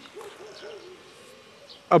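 A faint, low hooting call from a bird in the background, wavering in pitch for about a second.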